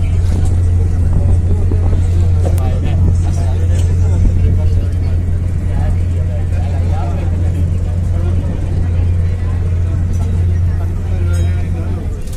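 Ro-ro ferry's engine running with a steady low drone, with voices talking indistinctly over it.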